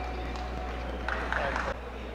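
Ringside arena noise with the fading ring of a boxing bell struck at the stoppage of the fight. A voice calls out briefly about a second in, then the sound cuts off abruptly near the end.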